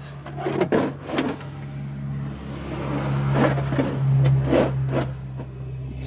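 Several short clicks and knocks of parts and tools being handled in a car's engine bay, over a steady low hum that grows louder toward the middle.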